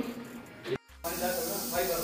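A steady hiss, with faint voices in it, starting right after a sudden drop to near silence a little under a second in.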